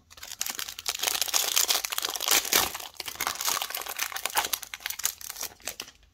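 Foil wrapper of a 2021-22 Donruss Basketball card pack being torn open and crinkled by hand, a dense crackling rustle that stops shortly before the end as the cards come out.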